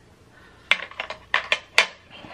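Metal fork and snail tongs clicking against snail shells and the metal escargot dish: about six short, sharp clicks in the second half.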